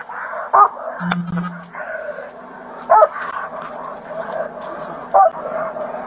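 Police K-9 dog barking three times, a couple of seconds apart.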